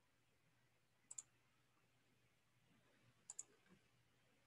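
Two faint double clicks of a computer mouse, about a second in and again a little past three seconds, against near silence.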